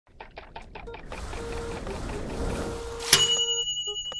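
Title-card sound effect: a quick run of ticks, about seven a second, then a rising whoosh that ends about three seconds in on a bright ding, whose high tones ring on and fade.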